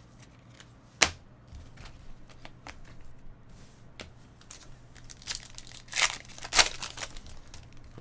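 A trading-card pack wrapper crinkling and being torn open, the loudest rips coming about six seconds in and just after. Before that there is a single sharp tap or click about a second in, then light handling ticks.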